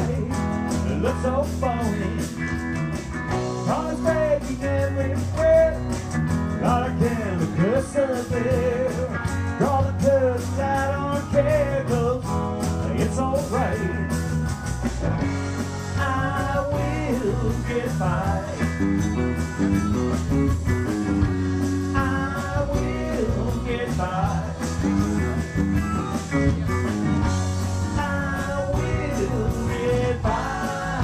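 Live rock band playing with electric guitars, electric bass, keyboard and drums. The lead guitar bends notes over a steady drum beat.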